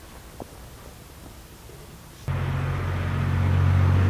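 Quiet outdoor background, then a loud, steady low mechanical drone starts abruptly a little over two seconds in and holds an even pitch.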